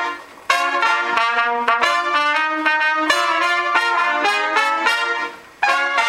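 Trumpet quartet playing jazz-funk together, a quick run of short, punchy notes. The playing breaks off briefly twice, just after the start and about five seconds in.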